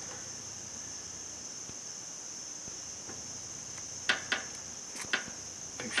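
Four short sharp clicks in two quick pairs, starting about four seconds in, from a plastic inline fuel valve being handled and pushed into a rubber fuel hose. A steady high-pitched tone runs underneath.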